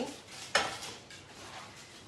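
A silicone spatula stirring melted chocolate in a glass bowl over a pot of water, with one sharp clink against the bowl about half a second in, then soft scraping.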